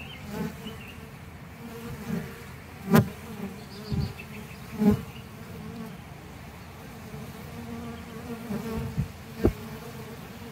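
Honeybees buzzing at a hive entrance: a steady hum with louder swells each time a bee flies close past, several times. About three seconds in comes a sharp click, the loudest moment.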